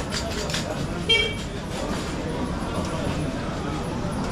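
A short vehicle horn toot about a second in, over street chatter and traffic noise.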